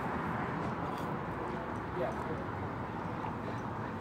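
Fire engine's diesel engine idling steadily, a low, even rumble under street noise.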